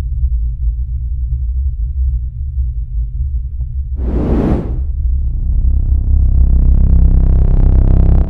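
Cinematic intro sound design: a deep steady rumble throughout, a whoosh about four seconds in, then a layered synth chord swelling louder from about five seconds to the end.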